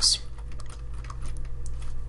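Typing on a computer keyboard: a string of light, irregular key clicks over a steady low hum.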